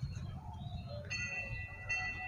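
A small metal bell struck about a second in and again near the end, each time ringing with several clear, high tones, over a low rumble.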